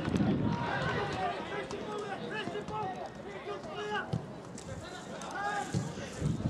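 Indistinct voices of players and spectators calling and talking around a football pitch, several at once and with no clear words.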